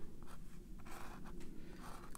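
Sharpie permanent marker drawing a series of short, faint strokes across cold-press cotton watercolor paper, inking diagonal lines.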